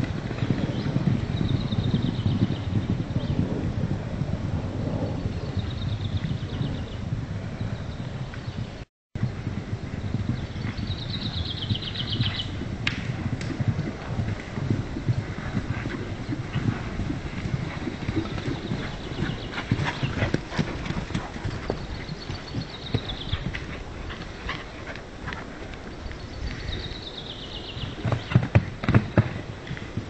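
Hoofbeats of several loose horses cantering and galloping over soft, straw-covered sandy ground, a continuous dull drumming that turns into sharper, louder strikes near the end as they come close.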